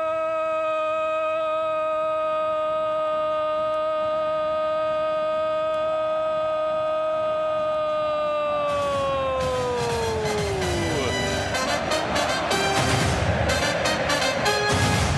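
A football commentator's long drawn-out 'Gooool' goal cry, held on one pitch for about ten seconds and falling away near the end. Music with sharp drum hits comes in as the cry fades.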